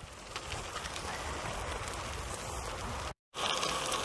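Bicycle tyres rolling over a gravel track, a steady crunching hiss, with a brief dropout to silence just after three seconds in.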